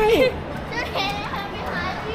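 A voice trailing off, then faint children's voices over steady background chatter.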